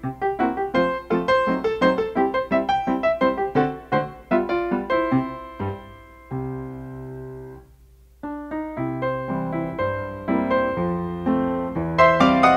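Background piano music: a run of quick notes, a chord held about six seconds in, a brief pause, then the playing picks up again with a fuller bass.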